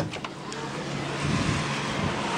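A metal push-bar door unlatches with a sharp clack as it is pushed open. Then comes the open-air sound of the outdoors with a steady low hum of vehicle traffic.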